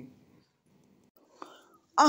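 A pause in a woman's narration: her voice trails off at the start, then near silence with one short, faint breath or mouth noise about a second and a half in.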